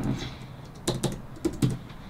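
Typing on a computer keyboard: a handful of separate keystrokes about a second in, the last of them the loudest.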